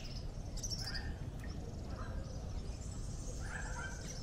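Small birds chirping in short, scattered calls over a steady low rumble.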